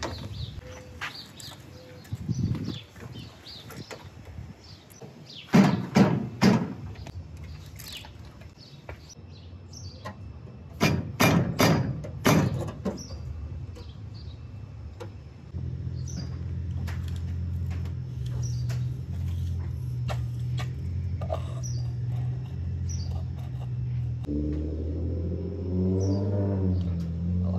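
Hand work on the pontoon's aluminium frame: a few loud knocks and clatters about six seconds in, and a quicker run of them near the middle, with birds chirping faintly behind. From a little past halfway, a steady background music bed with a low bass line comes in.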